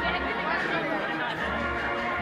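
Procession band music playing through the street, with a crowd chattering close by.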